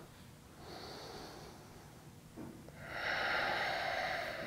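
A man's slow, deliberate deep breath, taken while holding a yoga pose: a faint breath about a second in, then a longer, louder breath from about three seconds in.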